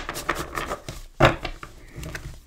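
Tarot deck being handled between shuffles: a few short taps and rubs of the cards, the loudest about a second in.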